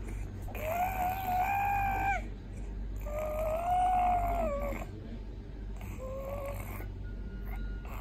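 A baby vocalizing in two long, drawn-out, high-pitched vowel sounds of about a second and a half each, then a short one near the six-second mark.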